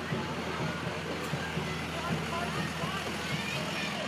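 A flatbed truck's engine running steadily at low speed as it passes, under scattered talking and calls from the surrounding crowd.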